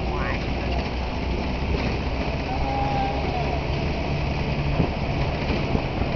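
Truck driving along a rough dirt road: a steady low engine rumble mixed with road and body noise, unchanging throughout.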